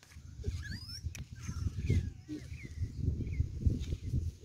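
Irregular rumbling and knocking from a phone's microphone being handled and rubbed as a toddler clambers over the person holding it, with a few faint high chirps over it.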